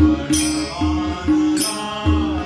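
Men singing a devotional song together, accompanied by tabla played in a steady, even rhythm of ringing strokes with deep bass drum thuds beneath.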